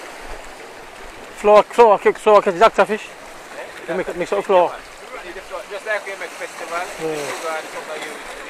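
Sea surf washing among shoreline rocks, a steady rushing, with men talking loudly over it from about a second and a half in.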